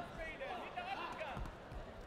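Dull thumps of bare feet and kicks on a taekwondo foam mat during a bout, two of them close together near the end, with people calling out in the hall.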